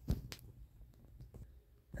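Quiet room tone with a few faint, short clicks: one near the start, another soon after, and two more in the second half.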